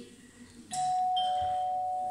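A doorbell chime, most likely a stage sound effect, rings out suddenly a little under a second in. It holds a steady, bell-like ring of two pitches that carries on past the end.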